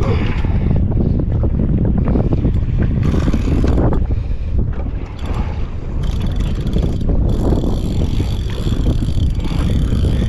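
Wind buffeting the microphone on a kayak at sea, loud and steady. From about six seconds in, a faint steady whine sits over it as the spinning reel is wound against a fish.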